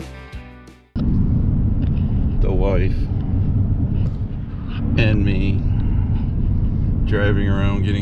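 Guitar music fades out in the first second. Then comes the steady low rumble of a pickup truck driving, heard from inside the cab, with a voice speaking briefly a few times over it.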